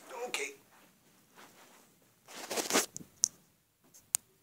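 Handling noise of a camera being grabbed close up: a loud rustling scrape about two and a half seconds in, then a sharp click.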